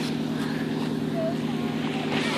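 Steady drone of a distant engine over the wash of small waves running up the sand.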